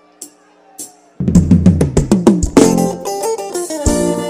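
Live band starting a song: two light ticks count in, then about a second in the drum kit comes in with strong kick and snare hits over bass and guitar, and the full band plays on.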